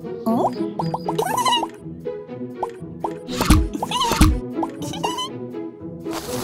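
Playful children's cartoon music with comic sound effects: quick pitched blips and plops over the first two seconds, then two loud downward swooping effects a little past the middle.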